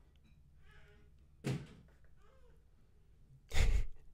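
Faint voices of young children making noise in another part of the house, with a short breathy burst about a second and a half in and a louder, deep thump near the end.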